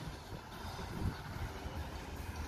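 Outdoor background noise: a steady low rumble of distant traffic.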